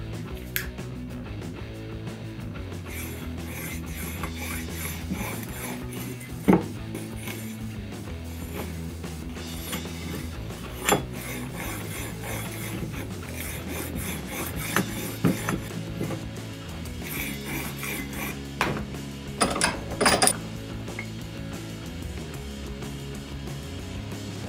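Steel knife blade drawn in repeated scraping strokes across the unglazed ceramic ring on the bottom of an upturned coffee mug, an attempt to sharpen on it. A few sharp knocks are heard, and background music plays throughout.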